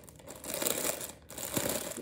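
Thin, crinkly plastic packaging bag rustling and crinkling as it is handled, in irregular bursts.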